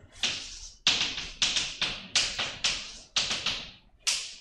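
Chalk writing on a blackboard: an uneven run of about a dozen sharp taps and short strokes as symbols are written, each one dying away quickly.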